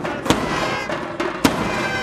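Procession band music: held trumpet notes over drumming, with two sharp, loud strikes about a second apart.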